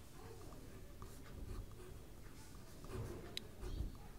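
Pen writing on a paper workbook page: a run of short, faint scratching strokes as words are handwritten, with a few soft low bumps of the hand on the page.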